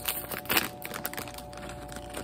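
Foil blind-bag wrapper being torn open and crinkled by hand, in irregular crackles with a sharper one about half a second in.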